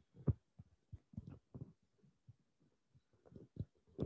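Faint, irregular low thumps and knocks, several a second, with no clear rhythm.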